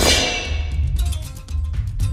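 Action music with drums, and right at the start a metallic clang sound effect of a shield strike that rings out and fades over about a second.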